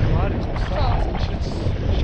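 Wind from a paraglider's airspeed buffeting the action-camera microphone, a steady low rumble, with brief voices in the first second.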